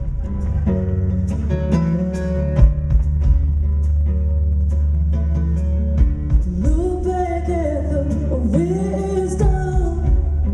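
Live song opening on guitar: picked guitar notes over a steady low bass tone, with a sung vocal line coming in about seven seconds in.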